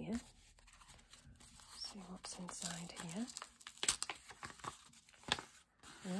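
Small paper envelope being opened and a bundle of paper pieces slid out of it: rustling and crinkling paper, with a few sharp crackles, the loudest about four seconds in.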